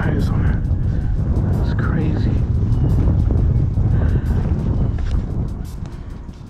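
A loud, low rumble that starts suddenly and eases off near the end, with music and a faint voice behind it.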